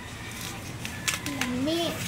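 A child's short wordless voice sound a little past the middle, lasting about half a second, its pitch dipping, then rising and falling.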